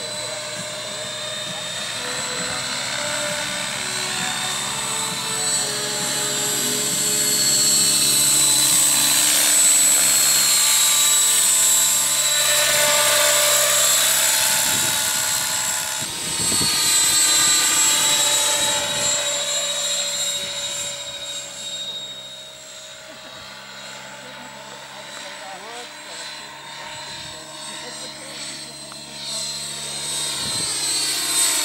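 Radio-controlled scale MD 500 model helicopter flying past, with the high steady whine of its motor and rotors. It gets louder toward the middle as it comes close, then fades over the last third as it moves away.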